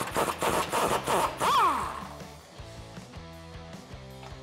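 Pneumatic impact wrench with an 18 mm socket on a swivel hammering loose the sway bar bracket bolts, a burst of rapid rattling that lasts about two seconds with a rising-and-falling whine as it spins up and down. Background music runs underneath and is all that is left after it stops.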